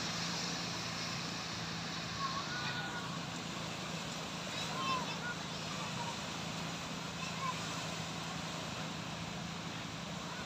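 Small sea waves breaking and washing up on a sandy beach, a steady surf hiss, with distant voices of people in the water calling out now and then. A low steady hum runs underneath.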